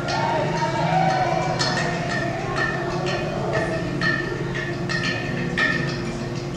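Udu clay pot drum played by hand. A wavering, sustained tone in the first two seconds gives way to irregular sharp taps, about one or two a second, each with a brief high ring.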